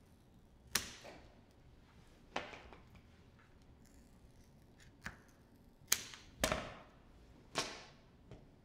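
Scissors cutting strips of pulled sugar, six crisp snips at irregular intervals, the second-to-last the loudest and longest.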